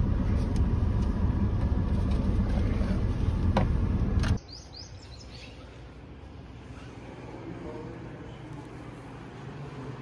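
Steady low rumble of a Suzuki car's engine and cabin heard from inside the car, with a couple of sharp clicks. After about four seconds it cuts off suddenly to a much quieter open-air hush with a few faint high chirps.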